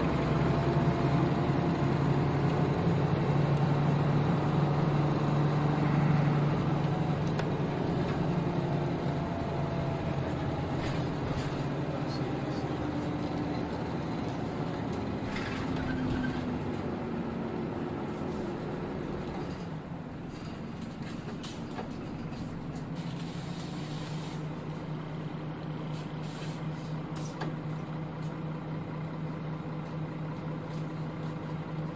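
Nissan Diesel KL-UA452KAN city bus running, its diesel engine and drivetrain whine falling in pitch and loudness as the bus slows, then settling to a lower, steady engine drone. A brief hiss of air, typical of the air brakes, comes about three-quarters of the way through, with scattered clicks.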